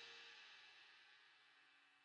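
The end of a bolero song's music fading out, dying away to near silence about halfway through.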